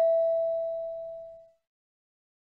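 The ringing tail of a single chime tone, a clear pitch with fainter overtones above it, fading away about one and a half seconds in. It is the cue tone between listening-test questions, marking the start of the next item.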